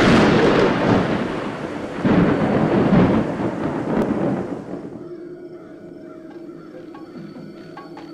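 Thunder sound effect: a loud crack and rumble in two surges, dying away after about five seconds. A low, steady musical drone sounds underneath, and faint taps follow.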